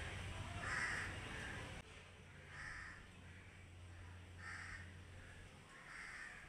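A bird calling faintly, four short harsh calls spaced about two seconds apart.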